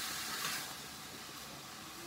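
Marinated chicken pieces frying in a pan: a steady, quiet sizzle that fades slightly.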